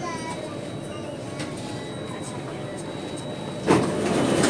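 Steady hum inside a C751A North East Line train cabin at a station stop, with a sudden loud burst near the end as the doors open, and louder noise after it.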